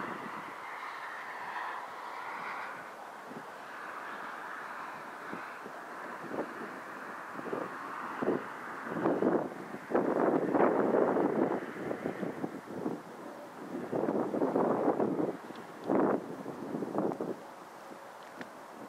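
Wind buffeting the microphone in irregular gusts that start a third of the way in and are loudest around the middle and again near the end, over a steady background hiss.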